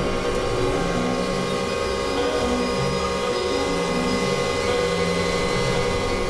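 Dense, layered experimental electronic music. Steady drone tones are held throughout, under a low line of short notes stepping up and down, all within a noisy, machine-like texture.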